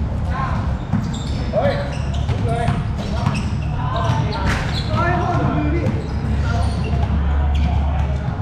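A basketball bouncing on a hard court among players calling out and chattering, with several short sharp knocks scattered through. A steady low hum runs underneath.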